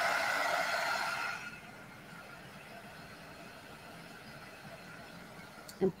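Handheld heat gun running loud, a steady rush of blown air with a faint whine, then switched off and winding down about a second and a half in, leaving quiet room tone.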